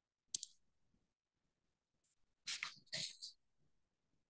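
A single sharp click about a third of a second in, then, near three seconds in, two short hissy noises about half a second apart, like small handling noises close to a microphone in a quiet room.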